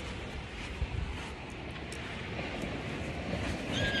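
Steady wind buffeting a hand-held phone's microphone, a low rumbling noise with no words over it.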